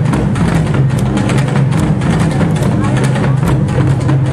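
Korean traditional drumming: a large barrel drum (buk) and a janggu hourglass drum played together in fast, dense strokes.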